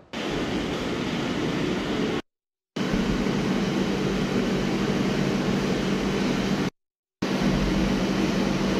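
Steady machine hum and rushing fan-like noise with a low drone, cutting out completely twice for about half a second.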